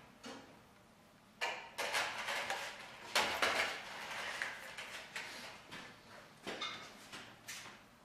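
Tape being handled at a convertible-top bow: a series of irregular rustling and scraping bursts as a strip is pulled from the roll and worked onto the metal frame, with a few short knocks near the end.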